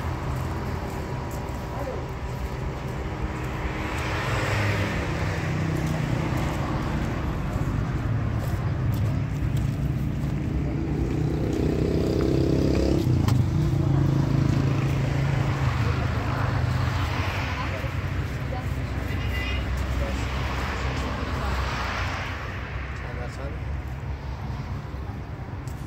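Road traffic: a steady low rumble with several vehicles passing one after another, each swelling and fading, the loudest about halfway through.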